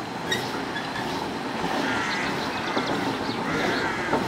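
A steam road roller on the move at walking pace: a steady mechanical clatter and rumble from its engine, gearing and iron rolls on the tarmac, with a sharp clank shortly after the start.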